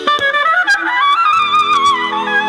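Clarinet playing an ornamented melody that slides and bends in pitch, over steady held accompaniment notes, with a few short percussive taps.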